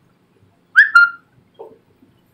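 Whiteboard marker squeaking against the board as letters are written: two short squeaks in quick succession about three-quarters of a second in, the first sliding slightly down in pitch.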